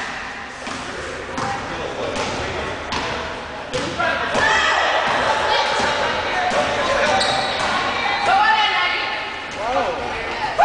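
Basketball being dribbled on a hardwood gym floor, bouncing about twice a second, with shouting voices over it.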